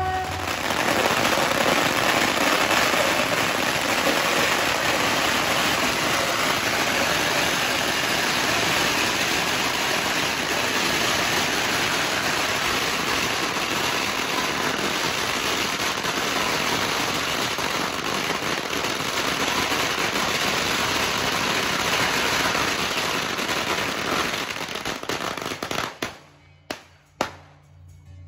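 A long coiled string of firecrackers burning on the street with a dense, continuous crackle of rapid bangs. Near the end it thins out into a few last separate bangs.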